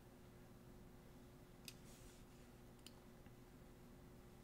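Near silence with a faint steady hum, broken by two sharp computer mouse clicks about a second apart.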